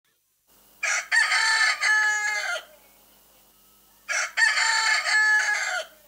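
A recorded rooster crowing twice over the stage loudspeakers, each crow lasting about two seconds, the first beginning about a second in and the second about four seconds in.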